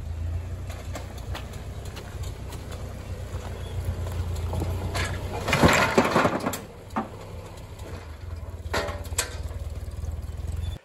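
Ford 8N tractor's four-cylinder flathead engine running at a low, steady idle. About halfway through, a load of rocks tips from the tractor's rear scoop and clatters down onto the rocks and culvert pipes, followed by a few sharp knocks of stone on stone.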